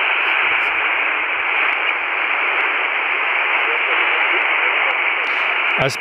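Steady hiss of band noise from a Radtel RT-950 Pro handheld's speaker as it receives upper sideband on the 20-metre band, heard through its narrow 3 kHz filter with no strong station coming through.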